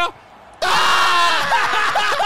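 Men's loud, drawn-out cries of dismay, "Ah! Ah! Ah!", breaking out about half a second in after a brief hush: commentators reacting to a missed scoring chance.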